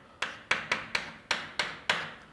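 Chalk tapping and scraping on a blackboard as a formula is written: about seven short, sharp strokes in quick, uneven succession.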